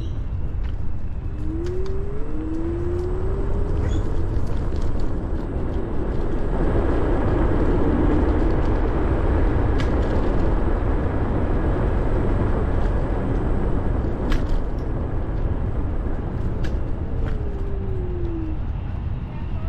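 Ninebot G30P electric kick scooter riding along a paved path: steady wind buffeting and tyre rumble, with the motor's whine rising in pitch as the scooter speeds up, several times. A few sharp knocks from bumps in the path.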